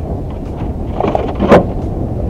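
Steady wind rumbling on the microphone over open water, with a few small knocks and one sharp, loud knock about one and a half seconds in.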